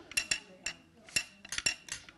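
Homemade instrument made from a tin can, with a string tied to a stick, being played: a string of about eight sharp metallic clinks, some with a brief high ring.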